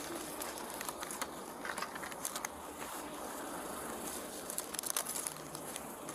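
Faint rustling and scattered small crackles over steady outdoor background noise, typical of clothing rubbing against a body-worn camera's microphone.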